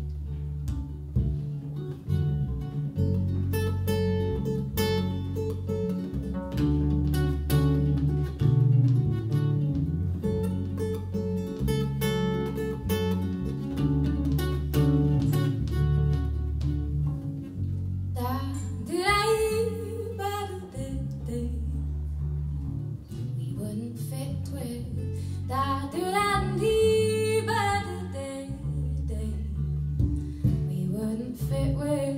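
Live acoustic folk-pop song: acoustic guitar playing over a low bass line. A woman's singing voice comes in about two thirds of the way through.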